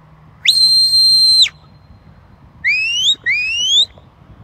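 Handler's whistle commands to a working sheepdog: one long, steady, high whistle held for about a second, then two quick rising whistles close together near the end.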